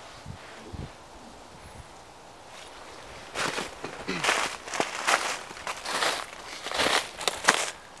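Footsteps through thin snow over dry leaf litter: about six steps, starting about three seconds in.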